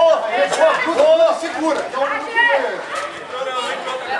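Voices of several people shouting and calling out over one another, as spectators and coaches do at a grappling match.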